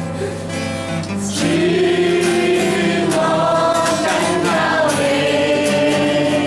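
A worship song sung by a man to his own strummed acoustic guitar, with long held notes.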